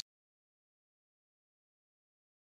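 Dead digital silence: the SmartMike+ Bluetooth wireless microphone's audio feed has dropped out, beyond its range at about 20 m.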